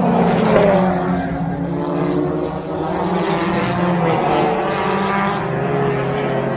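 Engines of several small hatchback race cars running at high revs as they pass on a short paved oval, their pitch rising and falling as they go by.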